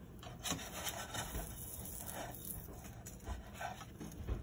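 A spatula scraping and pushing a grilled cheese sandwich across a nonstick frying pan, in several irregular strokes.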